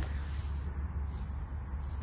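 A steady, high-pitched insect chorus in a grassy pasture, over a low steady rumble.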